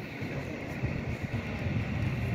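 Končar HŽ series 6112 electric multiple unit pulling away from the platform, with a steady low rumble.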